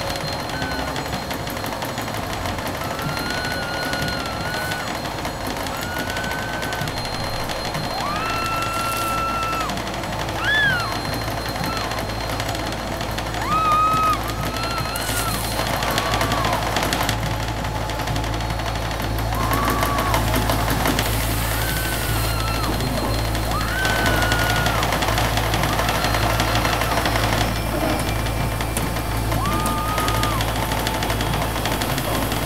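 Eerie score of held, gliding high tones, each about a second long, over a steady low hum and rumble from a front-loading washing machine running. The rumble grows stronger about halfway through.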